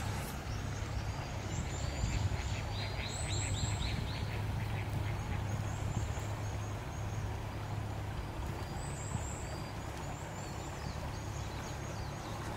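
Birds calling by a river, short high chirps scattered throughout, with a quick run of repeated calls about three to four seconds in, over a steady low hum.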